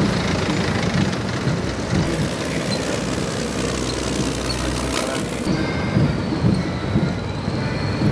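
Heavy military missile-launcher vehicles, wheeled launcher trucks and tracked launchers, driving past close by: a steady, dense mechanical noise of big diesel engines and rolling running gear.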